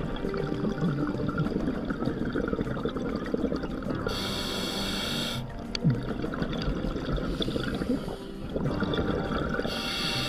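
Scuba regulator breathing underwater: bubbles gurgling and crackling from the exhale, broken twice by a hissing inhale, about four seconds in and again near the end.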